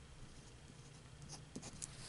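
Glass dip pen scratching faintly across paper as a word is hand-lettered, with a few light ticks of the nib in the second half.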